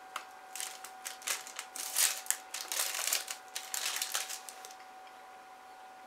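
Crisp chocolate bar crunching as it is bitten and chewed: a run of irregular crisp crackles, loudest around two to three seconds in and thinning out near the end.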